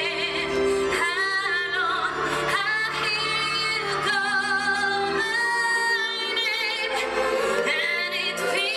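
A woman singing live into a handheld microphone over instrumental accompaniment, holding long notes with a wavering vibrato. The low accompaniment thins out about halfway through.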